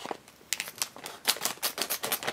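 A plastic blind-bag packet crinkling in the hands as it is worked open: a run of sharp, irregular crackles starting about half a second in.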